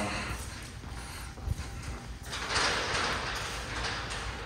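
Footsteps on a hard shop floor as people walk through a large workshop, with uneven room noise. A louder rush of noise comes about two and a half seconds in.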